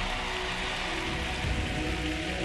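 Arena crowd applauding over slow program music, the clapping building just before and holding through.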